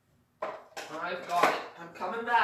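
Indistinct voice away from the microphone, starting with a sudden knock about half a second in, with clatter of objects being handled.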